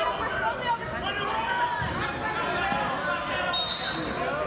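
Voices of spectators and coaches calling out during a wrestling bout, echoing in a gymnasium, with a low thump about two seconds in and a short high tone near the end.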